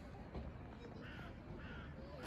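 A crow cawing twice, short harsh calls about half a second apart, over a low rumbling background.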